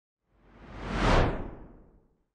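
Whoosh sound effect for an animated logo intro: one rushing swell that builds for about a second, then fades out as it falls in pitch.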